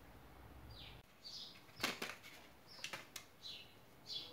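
A small bird chirping faintly, about half a dozen short calls that each fall in pitch. A few light clicks come with them, the loudest about two seconds in.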